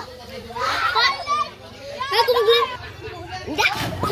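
Children shouting and calling out excitedly while playing in the water, in several bursts. Near the end comes a brief splash of someone jumping into the water.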